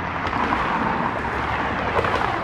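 Car traffic passing on the bridge roadway alongside, a steady noise of tyres and engines, with wind buffeting the microphone.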